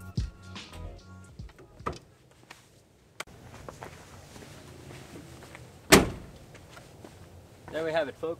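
Background music that ends about two seconds in, then a quiet stretch broken by a single loud, sharp thunk about six seconds in. A man's voice begins near the end.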